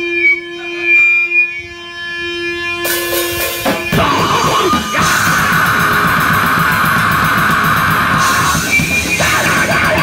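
A grindcore band playing live: a single guitar note rings on its own, then about three seconds in the full band starts a song at once, with fast, dense drumming and heavily distorted guitars that keep up steadily.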